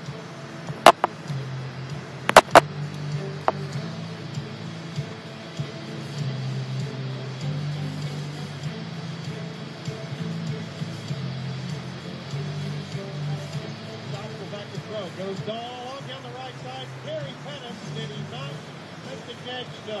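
Music with a steady bass line playing from a television, broken by a few sharp clicks in the first few seconds; some wavering voices come in over it near the end.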